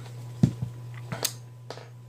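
A few short clicks and taps of hands handling a plastic OtterBox smartphone case, the loudest about half a second in, over a steady low hum.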